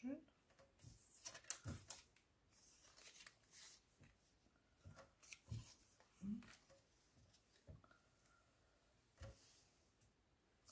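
Faint, scattered rustles and light taps of paper strips being picked up, shifted and laid down on a cutting mat, with a brief low hum of a voice about six seconds in.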